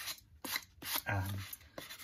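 Sanding block rubbing in short strokes on a soft cottonwood carving, a dry scraping hiss broken by a brief pause.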